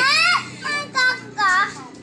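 A young girl's high-pitched, sing-song voice: one quickly rising call at the start, then a few short sung syllables.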